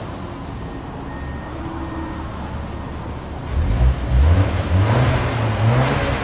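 2024 BMW X1 M35i's 2.0-litre turbocharged four-cylinder on its stock exhaust, idling, then revved a couple of times from about three and a half seconds in. The factory exhaust sounds very quiet and smooth.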